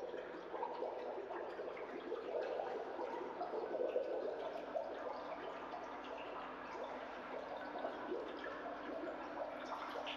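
Water sloshing, dripping and gurgling in a dense, irregular stream that is loudest a few seconds in, over a faint steady hum.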